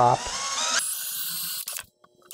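DeWALT 20V Max XR cordless drill/driver spinning up with a rising whine, then running steadily for about a second as it bores a pilot hole through a walnut runner into the plywood top. It stops shortly before the end.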